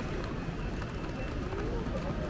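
Pedestrian street ambience: footsteps on paving and the indistinct voices of passers-by, over a steady low background din.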